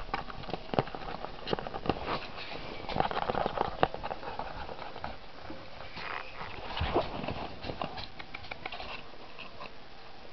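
Young ferret kits scrabbling about in a small cardboard box: irregular scratches, taps and rustles of claws and bodies on thin cardboard, busiest a few seconds in and again about seven seconds in.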